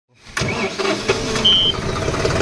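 John Deere CRDI diesel tractor engine being started: the sound comes in abruptly and the engine turns over and runs. A short high beep sounds about one and a half seconds in.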